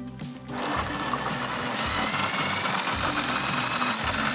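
Food processor starting up about half a second in and running steadily with a high whine as it blends a wet chilli and lemongrass paste. Background music plays underneath.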